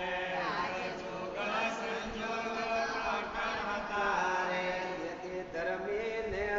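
Voices chanting a devotional chant in long, drawn-out sung lines.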